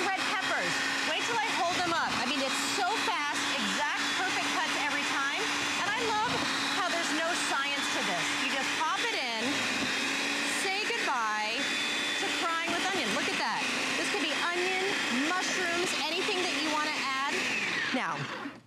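Electric motor of a NutriBullet Veggie Bullet food slicer running with a steady hum while its slicing blade cuts bell peppers and onion into strips. The motor cuts out near the end.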